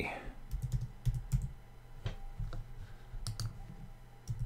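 Computer keyboard being typed: a short, uneven run of separate keystrokes as one word is entered.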